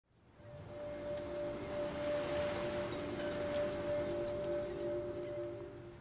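Soft opening of the background music: one steady, held ringing tone over fainter lower tones and a light hiss, fading in just after the start.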